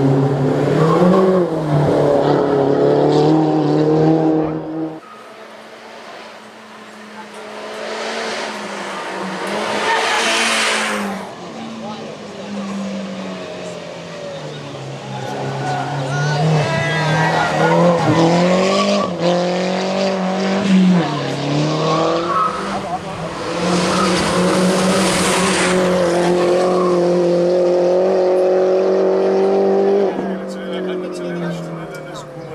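Mini Cooper S race car's turbocharged four-cylinder engine revving hard, its pitch climbing and dropping again and again through gear changes. Two rushes of tyre noise come through, one about ten seconds in and one near twenty-five seconds in.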